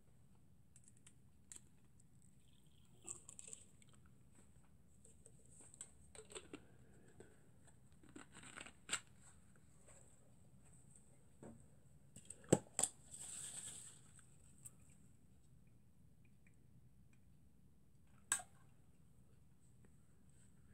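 Quiet handling noises: scattered small clicks and knocks of hands working with the model steam plant's metal parts, two sharp knocks close together about twelve seconds in followed by a short hiss, and one more knock near the end.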